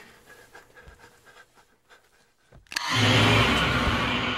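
A woman's quick, faint panting breaths, then near the end a sharp click and a sudden loud, raspy scream over a deep booming low tone, as in a horror-film trailer's shock moment.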